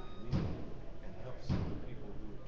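Heavy thumps repeating about once a second, part of the background noise of an event being set up around a conversation.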